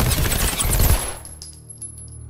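Rapid automatic gunfire from two pistols, with bullets smashing into the room and debris flying. It stops about a second in, leaving a low steady musical hum and a few faint ticks.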